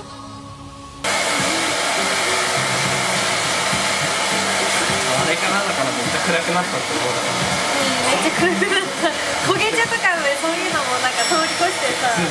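Salon hair dryer blowing steadily, coming in abruptly about a second in, as freshly dyed hair is blow-dried; a woman talks over it.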